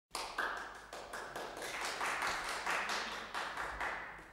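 Applause from a small audience, the separate hand claps clearly heard, dying away at the very end.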